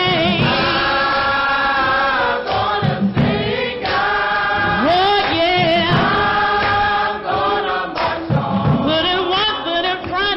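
Gospel choir singing, with a woman soloist at a microphone leading; the voices hold long sustained chords that swell and bend in pitch.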